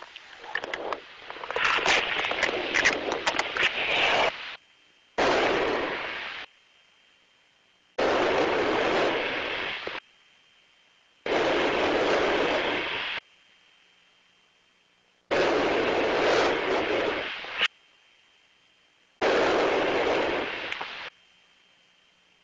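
Loud rushes of hiss in a rhythm, six of them, each about two seconds long and coming every three to four seconds with quiet between: breathing and oxygen flow in a sealed pressure-suit helmet during a suit pressure integrity check.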